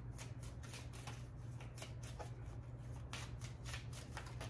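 A deck of cards shuffled by hand: a quiet, uneven run of short card flicks.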